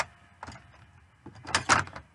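Handling noises of makeup items: a sharp click at the start, a fainter click about half a second in, then a longer scraping rustle near the end.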